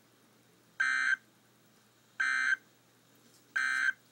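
Emergency Alert System end-of-message data bursts: three short, identical, harsh buzzing blips about a second and a half apart, the SAME digital code that closes a weather alert.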